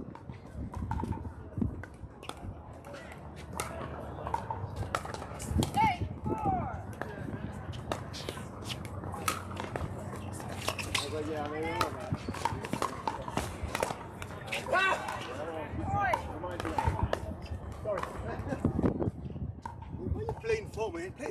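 Pickleball play: an irregular series of sharp pops as paddles hit the hard plastic ball, with voices heard between the shots.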